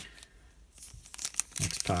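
Foil wrapper of an Upper Deck hockey card pack crinkling and tearing as it is ripped open, starting about a second in and growing louder.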